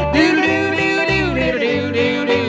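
Old-time country music: guitar and banjo over a steady alternating bass beat, with a voice holding wordless, gliding notes in the closing bars of the song.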